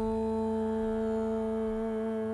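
A woman's voice chanting one long, steady held note of a mantra over a sustained drone.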